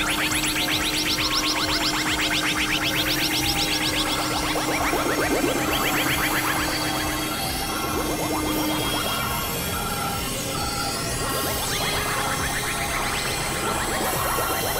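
Experimental electronic synthesizer music: a rapid run of short, rising synth notes over a held low drone, which drops out about eight seconds in and leaves a thinner, sparser texture.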